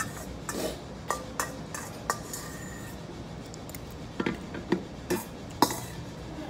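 A thin metal utensil clinking and scraping against a large stainless steel bowl: a string of sharp clinks, some ringing briefly, with the loudest knock shortly before the end.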